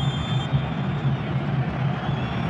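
Stadium crowd noise, a steady rumble with a low hum under it, while a penalty kick is about to be taken. A brief high whistle sounds in the first half second: the referee's signal that the kick may be taken.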